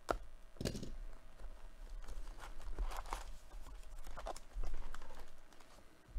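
Hands opening a cardboard trading-card hobby box and sliding out the foil packs inside: a string of irregular rustles, scrapes and crinkles, with a sharp tap right at the start.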